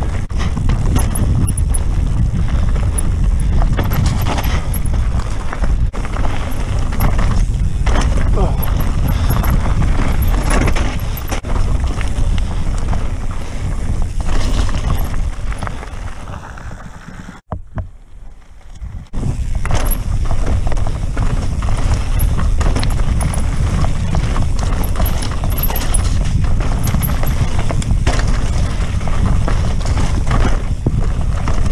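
Wind buffeting a bike-mounted camera microphone over the rumble and rattle of a Santa Cruz Megatower mountain bike rolling over rocky trail and gravel, with scattered knocks from the bike. About halfway through, the sound drops out briefly, then picks up again as before.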